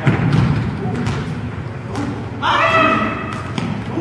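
Indoor soccer ball being kicked and thudding on a gym floor: several dull thuds in the first two seconds, the loudest right at the start. A man shouts briefly about two and a half seconds in.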